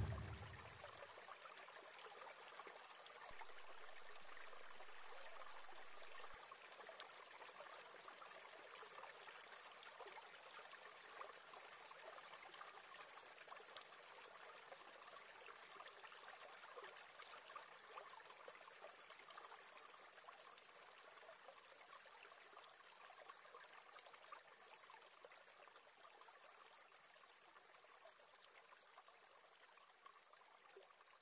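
Near silence: a faint, even hiss that slowly dies away.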